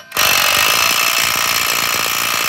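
Impact wrench hammering steadily, starting a moment in, as it runs a lug nut down over a spacer to pull a new wheel stud into the hub.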